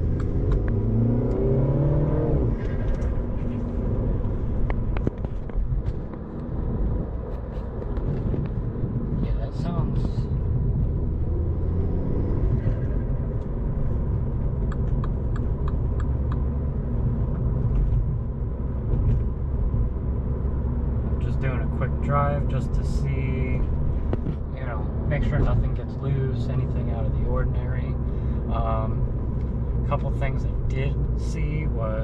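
A Mini Cooper S's turbocharged four-cylinder engine, breathing through an aFe Stage-2 cold air intake, and its road noise heard from inside the cabin as a steady low rumble that swells and eases while driving in traffic. Indistinct voices come through briefly near the start and again about two-thirds of the way in.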